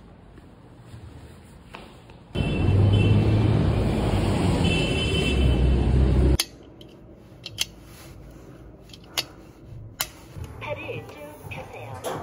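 Outdoor street noise: a loud, steady rush with a deep rumble for about four seconds, cutting off suddenly. It is followed by quiet room sound with a few sharp clicks.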